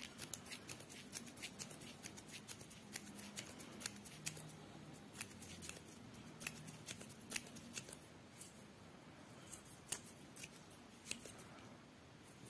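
Faint, quick ticks and rustles of cotton thread and a wooden tatting shuttle as chain stitches are worked and snapped tight, close together at first and thinning out near the end.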